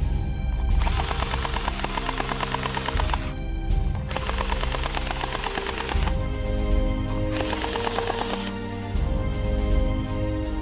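Gel blaster firing three rapid-fire full-auto bursts of about ten shots a second, each a second or two long, over background music.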